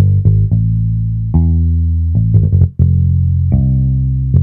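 A GarageBand software electric bass (the 'Liverpool' bass instrument) plays a bass line solo. It mostly holds low notes, with a quick run of short notes a little past the middle. The track is at maximum volume and clipping, which makes it distort.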